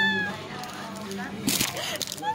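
A person's short, high-pitched, cat-like squeal right at the start, its pitch sweeping up and then falling away. Quieter voice sounds follow, with a brief rustle about one and a half seconds in.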